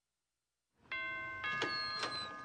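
A two-note chime like a doorbell ding-dong, starting about a second in after silence: the second note comes about half a second after the first, and both ring on steadily. A short click follows near the end.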